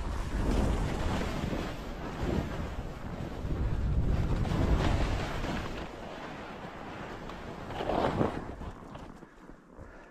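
Wind buffeting the microphone of a skier's camera, over skis hissing and scraping through tracked, lumpy snow on a descent. The rush is heaviest in the first half, with a brief louder scrape about eight seconds in and a quieter stretch at the end.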